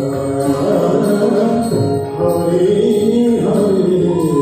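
Indian devotional song: a singer's voice gliding through a melodic line over steady, held drone tones.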